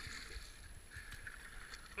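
Faint, steady rush of fast white water around a kayak's bow, with a low rumble underneath.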